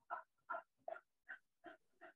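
Faint, chopped fragments of a voice breaking up over a failing video-call connection: short blips about three a second instead of continuous speech.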